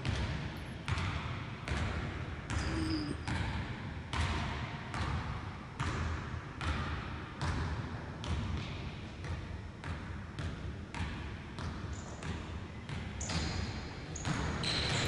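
A basketball being dribbled on a hardwood gym floor: steady bounces, a little over one a second, each echoing briefly in the large hall.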